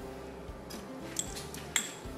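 Soft background music, with a couple of light clinks of a metal wire whisk and silicone spatula against a glass mixing bowl, about a second in and again near the end.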